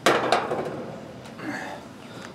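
Two knocks about a third of a second apart, then fainter handling noise, as HVAC run capacitors are handled and set against the sheet-metal top of an air-conditioner condenser unit.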